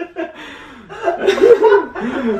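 A person chuckling and laughing, the laughter growing louder about a second in.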